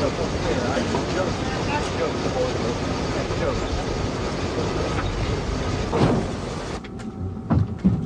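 Steady outdoor street noise with indistinct crowd voices, and a loud thump about six seconds in. Near the end the sound cuts abruptly to a quieter room, and a few sharp clicks follow.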